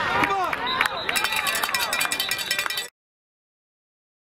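Voices shouting on a football field. Then a referee's whistle blows with a fast trill for about two seconds, and the sound cuts off abruptly to silence about three seconds in.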